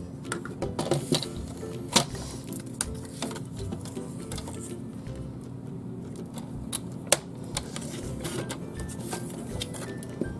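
Quiet background music, over scattered clicks and taps of card stock being handled and trimmed on a paper trimmer, with two sharper clicks about two and seven seconds in.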